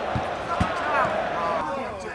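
Two dull thuds of a football being struck, about half a second apart, with players' shouts across the pitch.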